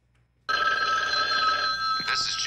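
A telephone ringing: one unbroken ring that starts suddenly about half a second in and holds steady, opening a mock answering-machine message.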